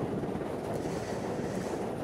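New York City subway R train pulling out of the station alongside the platform: a steady, even rushing noise of the cars rolling past.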